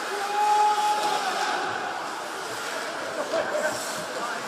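Arena noise at an ice hockey game: steady crowd murmur, with a held tone lasting about a second near the start. A few short knocks come near the end.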